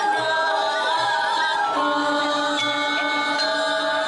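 Balinese gong kebyar gamelan playing dance accompaniment: bronze metallophones ring in sustained, shimmering chords over a soft low pulse. The chord changes a little before halfway.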